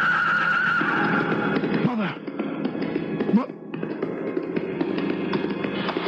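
Horse neighing and hoofbeats, a radio-drama sound effect of a stallion, over music whose long held high note fades out about two seconds in.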